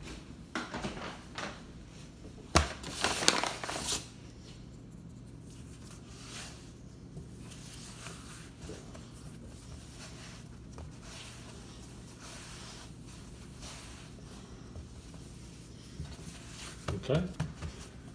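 Hands working pizza dough on a floured wooden tabletop: a sharp knock a few seconds in, then about a second of rustling. After that come soft, scattered handling noises over a steady low hum.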